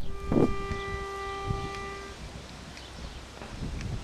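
Pitch pipe blown for one steady held note of about two seconds, giving a barbershop group its starting pitch. Wind rumbles on the microphone underneath.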